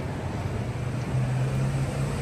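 Street traffic: a car engine's steady low hum with road noise, growing a little louder after about a second.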